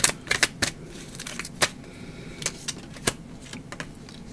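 Tarot cards handled and shuffled by hand, making a series of irregularly spaced sharp clicks and snaps as a card is drawn and laid down.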